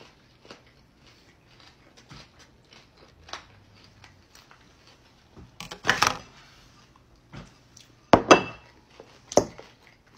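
Forks clicking against ceramic bowls during a meal, with a clear plastic takeout container handled and set down right by the microphone, making two loud handling noises a little past the middle and near the end.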